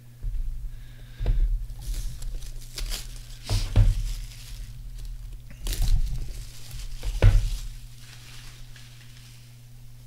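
Cellophane shrink-wrap crinkling and tearing as it is pulled off a trading card box, with a few dull thumps of the box being handled, the loudest about seven seconds in.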